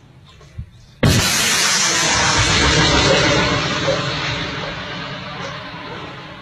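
An anti-tank guided missile launched close by: a sudden loud blast about a second in, then the rushing noise of its rocket motor carries on for several seconds and slowly fades as the missile flies off toward the tanks.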